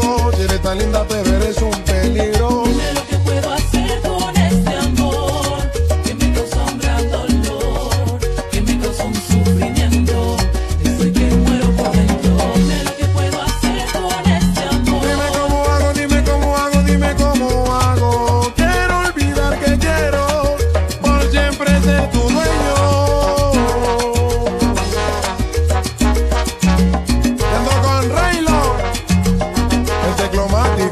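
Salsa music with a steady bass and percussion beat and melodic lines above it.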